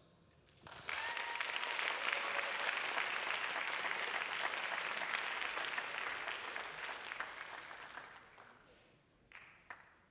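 An audience applauding in an auditorium. The clapping starts about a second in, holds steady, then dies away over the next few seconds, with one short, faint sound just before the end.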